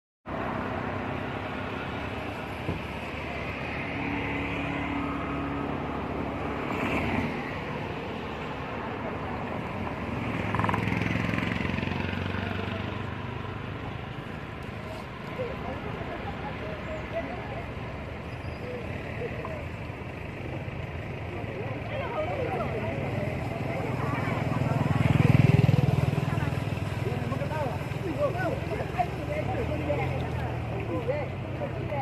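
Road traffic passing, with the loudest pass in the last few seconds, over indistinct voices.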